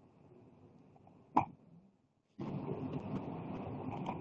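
Faint room tone from a meeting participant's microphone, one sharp pop about a second and a half in, then about two seconds of louder, noisy microphone sound.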